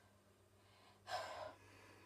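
One short, audible breath from a boy about a second in, lasting under half a second, against an otherwise near-quiet room with a faint steady hum.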